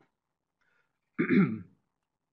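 A man clears his throat once, briefly, a little over a second in; the rest is near silence.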